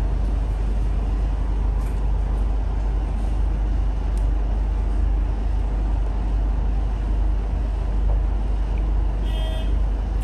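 Steady low rumble with an even hiss of background noise, unchanging throughout, with no distinct knocks or clicks.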